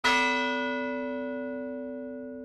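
A single bell-like musical note struck once at the start, ringing on and slowly fading: an intro chime.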